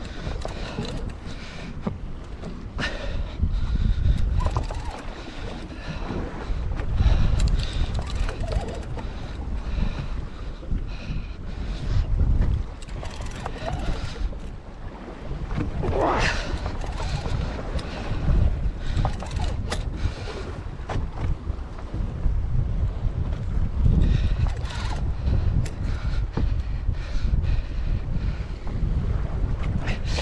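Wind buffeting the microphone in low, rumbling gusts over the wash of the sea against a boat's hull.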